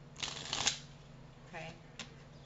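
A deck of tarot cards being shuffled, one brief shuffle of about half a second, loudest at its end.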